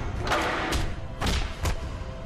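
Movie fight sound effects: about four heavy thuds of blows and kicks in quick succession, one with a swish, over a film score.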